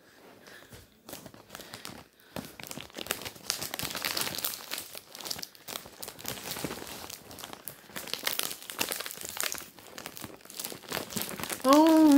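Orange plastic shipping mailer bag crinkling in a dense run of irregular crackles as it is handled and pulled open.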